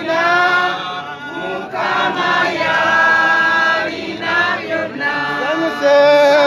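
A group of voices singing together in long held notes, without instruments.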